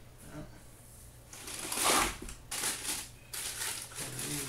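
Tissue paper and a cardboard shoebox rustling in several bursts as a pair of sneakers is packed back into the box, loudest about two seconds in.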